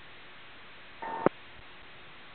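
Steady hiss of an aviation VHF radio channel between transmissions, with one short steady beep about a second in that ends in a sharp click.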